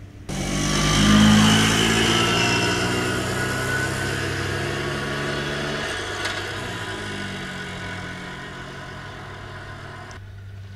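A small motor vehicle's engine passing close and driving away down the road, loudest about a second in and then fading with a slightly falling pitch as it recedes. The sound starts abruptly, and there is one short click near the middle.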